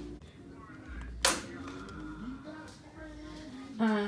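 Faint voices in the background, broken by a single sharp click a little over a second in, with a louder voice starting near the end.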